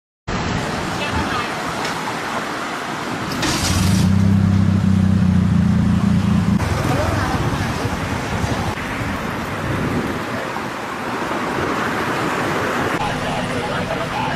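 Road traffic noise: a steady wash of passing cars and motorbikes. A vehicle engine hums loudly close by from about three and a half to six and a half seconds in.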